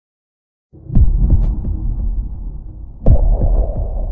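Cinematic trailer-style sound effects: after a short silence, two deep hits about two seconds apart, each trailing into a low, throbbing rumble.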